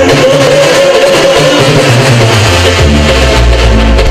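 Mexican regional band music playing a lively chilena: a long held melody note over a stepping bass line.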